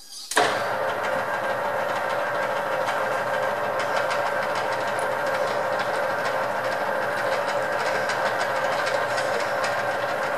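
Metal lathe switched on about a third of a second in, then running steadily with a gear whine and fine irregular ticking as a hand-repaired tap, lubricated with oil, is run slowly into the spinning workpiece to cut a thread.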